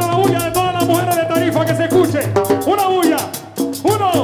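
A live Latin dance orchestra playing, with a quick, even percussion beat under a melody line that is held for a while and then moves in short bending phrases.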